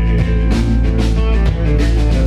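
Live amplified band playing an instrumental passage: guitars over a drum kit with steady drum strikes.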